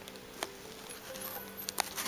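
Faint background music with steady held notes, broken by a few light clicks from handling the pin card, one about half a second in and two close together near the end.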